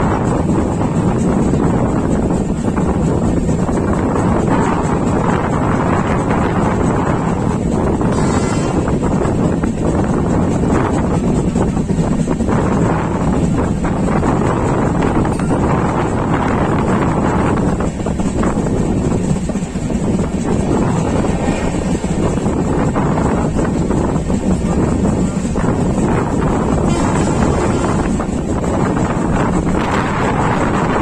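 Passenger train running on the track, its steady rumble heard from an open coach window, with wind buffeting the microphone throughout.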